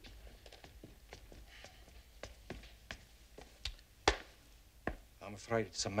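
Hard-soled footsteps on wooden stairs, a quick, uneven run of sharp steps with the loudest about four seconds in.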